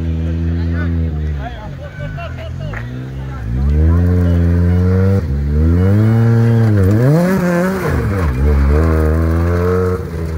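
Peugeot 208 rally car engine revving hard as the car passes close by. The pitch climbs with each gear and drops sharply at the shifts and lifts, loudest in the second half.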